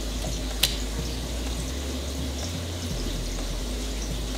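Steady rush of running water from a reef aquarium system's tanks and sumps, over a low hum. A single sharp click comes about half a second in.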